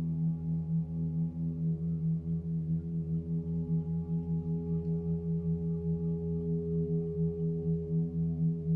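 36-inch Cosmo gong played softly and continuously, a sustained low hum of many tones that wavers in level several times a second, with a higher overtone swelling from about halfway through.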